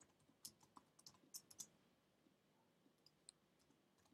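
Faint keystrokes on a computer keyboard as text is typed: a quick run of taps in the first second and a half, then a few scattered taps.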